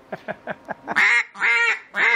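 Single-reed duck call blown in quacks: short, soft notes, then two long, loud quacks in the second half.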